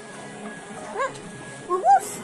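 A beagle gives two short, high whines about a second apart, the second louder, over background music.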